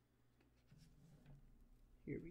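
Very faint scratching of a pen on notebook paper, close to silence over a low room hum.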